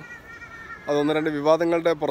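A man talking close to the microphone, starting about a second in after a short pause.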